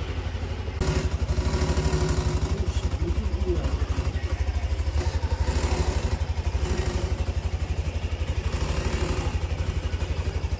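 Yamaha NMAX 125 scooter's single-cylinder four-stroke engine idling with a fast, even low pulsing; it gets louder a little under a second in.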